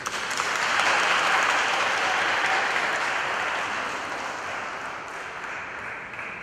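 Congregation applauding: the clapping starts at once, is fullest about a second in, then slowly dies away.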